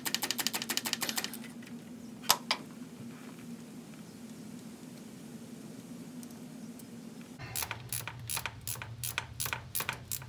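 Socket ratchet clicking as a bolt holding an old mechanical fuel pump is backed out: a quick run of clicks, a single sharp knock a couple of seconds in, then a pause, and slower, separate clicking strokes near the end.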